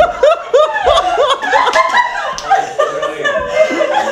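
A woman laughing loudly and uncontrollably in quick repeated ha-ha pulses, about four a second, which run together into longer wheezing laugh sounds in the second half.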